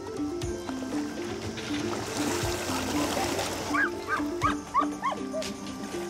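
Background music with a steady melody; over it, water splashing, then a quick run of about six short high whines from an Irish Setter swimming in a river, about four to five seconds in.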